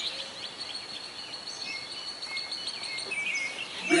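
Birds chirping and singing over steady outdoor background noise, with a thin, steady high-pitched whine that stops about three seconds in.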